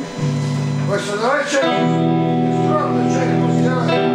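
Electric guitar played through an amplifier: a short held note, then from about two seconds in a chord left ringing and sustaining.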